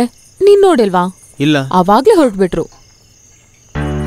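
Crickets chirping steadily as background ambience under two short spoken lines. A sustained music chord swells in near the end.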